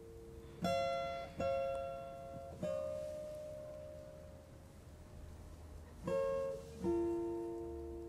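Slow, sparse plucked guitar notes in a film score, each ringing out and fading: three in the first three seconds, then a pause, then two more near the end, over a soft held tone.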